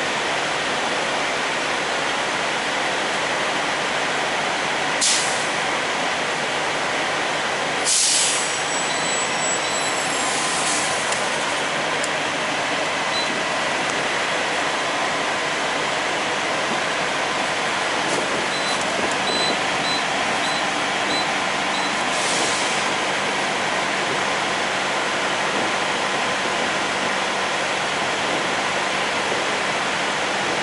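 Steady noise of idling diesel semi trucks around a truck-stop fuel island, with three short air-brake hisses spread through it and a brief run of faint high beeps past the middle.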